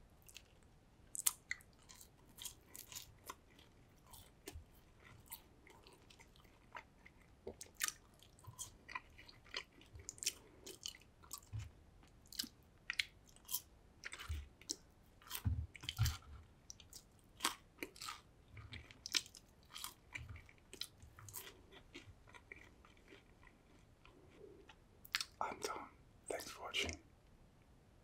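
Close-miked chewing of French fries, with small bites and wet mouth clicks in a steady run of short sounds. A louder burst of mouth sounds comes near the end.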